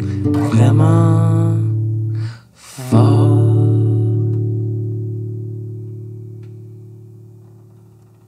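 Acoustic guitar chords: one strummed chord rings for about two seconds and breaks off, then a last chord is strummed about three seconds in and left to ring out, fading away slowly as the song's closing chord.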